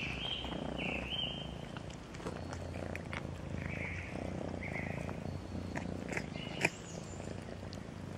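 Domestic cat purring steadily close to the microphone, with a few short high chirps and scattered clicks, the sharpest a little past six and a half seconds in.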